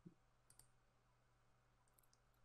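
Near silence with a few faint computer mouse clicks, in pairs like double-clicks.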